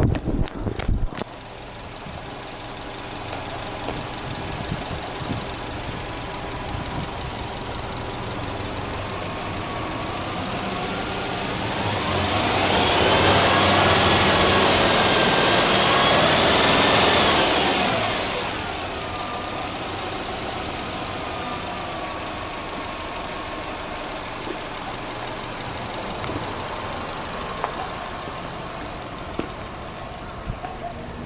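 Subaru Legacy 2.0GT's EJ20 turbocharged flat-four idling with the bonnet open, after a few knocks in the first second. About ten seconds in it is revved up, held high for about five seconds, and then drops back to a steady idle.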